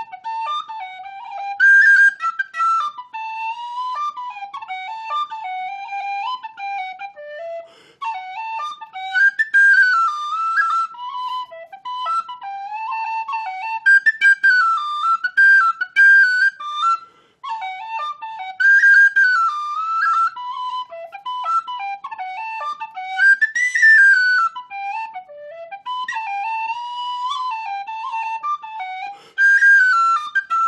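Solo tin whistle playing a lively Irish double jig, a single unaccompanied melody of quick notes. The tune breaks off briefly twice, about eight and seventeen seconds in.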